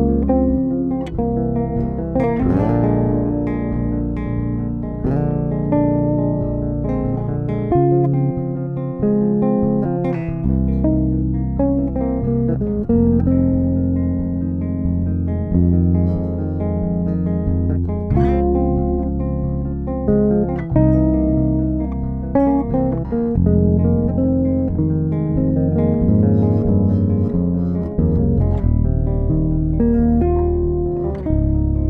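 A Marleaux Votan Deluxe 5-string electric bass with Delano pickups, played fingerstyle unaccompanied: chords and melodic lines with long sustained notes, including a sliding note about two and a half seconds in.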